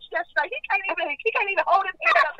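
Speech only: a person talking steadily, with the thin, narrow sound of a telephone line.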